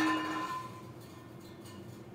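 Insulated metal drink tumbler ringing after being thrown and hitting a hard surface: a few clear, steady tones that fade out within about the first second.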